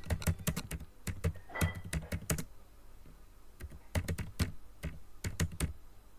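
Typing on a computer keyboard: bursts of quick keystrokes as a line of text is typed, with a pause of about a second midway.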